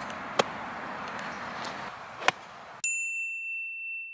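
Golf iron striking the ball on the fairway, a sharp click about half a second in, with a second click near the two-second mark. Then a steady ringing chime sound effect, one high tone, starts suddenly and carries on through the rest.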